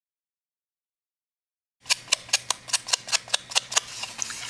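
Rapid light tapping, about ten sharp clicks at roughly five a second, starting abruptly about two seconds in: a foam sponge brush being dabbed onto a small ink pad to load it with ink.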